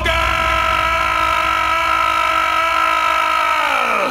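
A motorcycle engine holding a steady pitch, then dropping in pitch and fading near the end.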